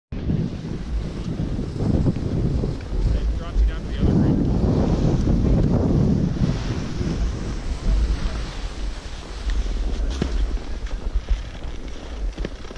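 Wind buffeting the microphone of a GoPro action camera while skiing downhill, mixed with skis scraping over groomed snow; the rumble swells about four seconds in and eases after six or seven seconds.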